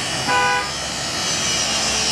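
A power grinder cutting through metal, running steadily with a high, hissing whine. A short horn toot sounds about a third of a second in and is the loudest thing heard.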